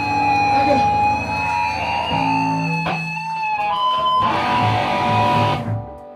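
Live rock band: electric guitar holding long ringing notes for the first few seconds, then a burst of cymbals and drum hits about four seconds in, before the sound drops away near the end.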